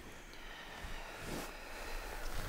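Quiet room tone with a faint, short soft sound about one and a half seconds in.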